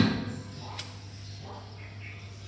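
Stainless-steel roll-top chafing dish lid handled by its metal handle: a sharp metallic clunk right at the start that dies away quickly, then a single light click a little under a second in.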